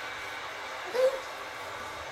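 A single short, high-pitched voice sound about a second in, rising briefly, over steady background noise.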